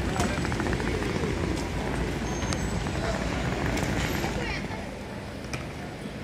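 Ambience of a busy pedestrian street: many passers-by talking indistinctly over a steady low rumble of city noise.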